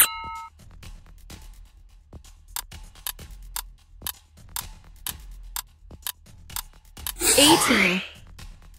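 Quiz countdown-timer sound effects: a short chime at the start, then steady ticking about twice a second, and near the end a loud whooshing buzzer with wavering, falling tones that marks time running out.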